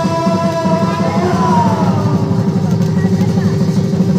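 Live bhaona music: khol drums beat a fast, steady rhythm under a long held high note. About a second in, the note slides down and then settles on a lower held note.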